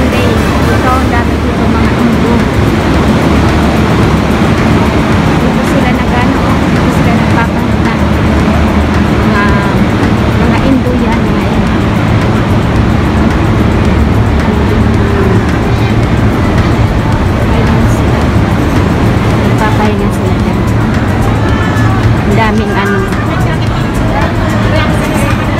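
Loud, steady urban ambience: traffic rumble mixed with the chatter of a crowd, with music underneath.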